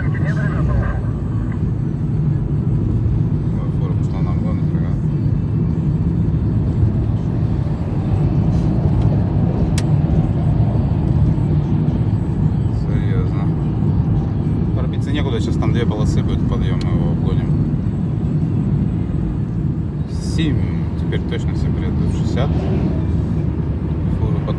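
Road noise inside a moving car's cabin at highway speed: a steady low rumble of tyres and engine.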